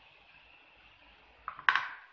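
A crochet hook set down on the tabletop: a brief clatter of two quick knocks near the end, the second louder.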